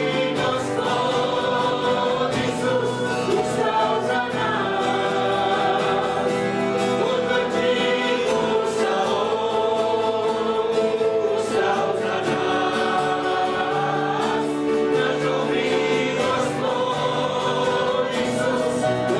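A worship song sung by several men and women together on microphones, with held notes, accompanied by strummed acoustic guitars.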